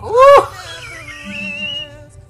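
A short, loud, high-pitched "woo" from a man that rises and falls in pitch, over a male singer's ballad vocal; about a second in the singer holds a very high whistle-like note that creeps slightly upward.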